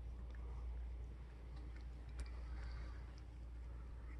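A domestic cat licking a man's beard: a few faint, soft wet ticks of its tongue, one a little past two seconds in slightly louder, over a low steady hum.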